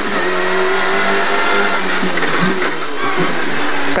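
Citroën Saxo rally car's engine heard loud from inside the cabin, running hard at fairly steady revs.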